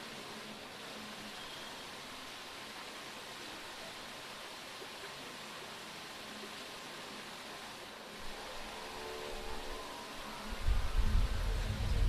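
Steady hiss of background noise, then background music fades in about eight seconds in and gets loud, with heavy bass, near the end.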